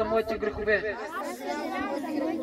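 A group of children reciting a line of prayer together, repeating after the leader, with many voices overlapping slightly out of step.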